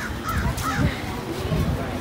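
A bird cawing about three short times in the first second, over a low, uneven background rumble.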